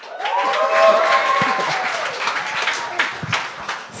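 Comedy-club audience applauding, many hands clapping, with a held cheer over the first couple of seconds as a comedian is welcomed to the stage.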